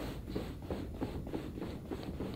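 Faint, soft rustling of cloth and hands: a series of light brushing sounds as the towel wrapped around the patient's neck is gripped and shifted.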